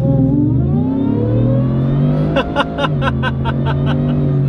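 Ford F-150's Whipple-supercharged 5.0 V8 at full throttle, the engine note and supercharger whine rising in pitch through the first couple of seconds as the truck accelerates hard, heard from inside the cab.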